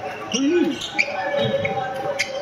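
Badminton rackets striking shuttlecocks: a few sharp, short hits in a reverberant sports hall, with a brief voice call and players' background chatter.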